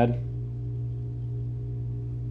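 A steady low hum with a few fainter, fixed higher tones above it, unchanging throughout.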